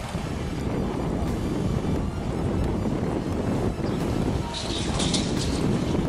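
Wind buffeting the microphone over the low, steady running of boat outboard motors on the water.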